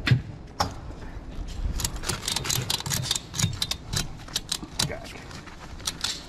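Ratchet strap being worked by hand: a run of sharp metallic clicks from the ratchet buckle, a couple near the start and then many quick, irregular ones through the middle seconds.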